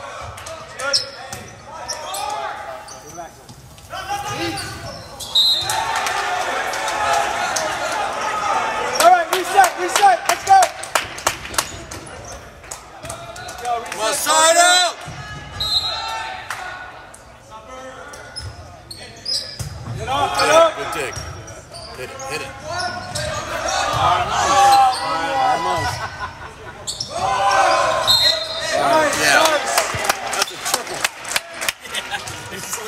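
Indoor volleyball play in an echoing school gym: the ball being hit and bouncing on the hardwood floor many times, players and spectators shouting, and three short high whistle blasts about 5, 15 and 28 seconds in.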